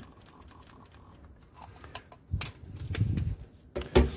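Light clicks and knocks from handling a serological pipette and its electronic pipette aid at the tube, starting about two seconds in, with a short low rumble of movement around the three-second mark.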